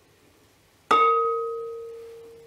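A single clink on a glass stand-mixer bowl about a second in, which rings with a clear bell-like tone that fades away slowly.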